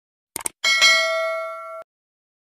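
Two quick mouse-click sound effects, then a bell ding that rings for about a second and cuts off suddenly: the click-and-notification-bell sound of a subscribe-button animation.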